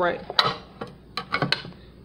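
A can of evaporated milk being punched open, giving a few sharp metal clicks and taps spread over a second or so. The holes go on two sides so the milk will pour.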